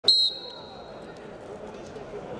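Referee's whistle blown once, short and high-pitched, to start the wrestling bout, its tone ringing on for about a second in the hall. Faint hall murmur follows.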